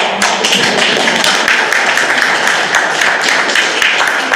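Congregation applauding: many hands clapping in a dense, irregular patter that carries on steadily.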